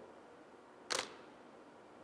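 A DSLR camera's shutter firing once, a single sharp click about a second in, as a studio frame is taken.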